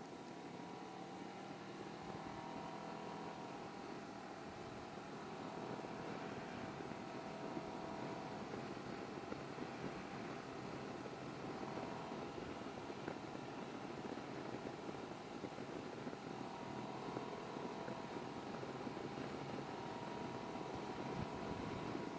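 Can-Am Ryker three-wheeled motorcycle's engine running steadily at cruising speed, under a haze of wind and road noise on the bike-mounted microphone.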